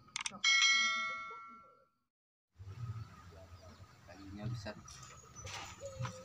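A quick mouse click, then a bright bell ding that rings out and fades over about a second and a half: the stock sound effect of a subscribe-button animation.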